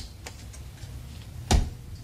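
A few sharp clicks and, about one and a half seconds in, a louder thud with a low boom, over a low steady hum: sound effects in the intro of a sped-up Eurobeat track, before the music starts.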